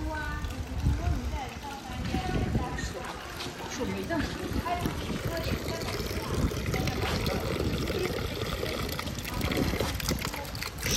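Visitors talking in the background, with a low uneven rumble, while a thin stream of mineral spring water trickles from a bronze snake-head fountain spout.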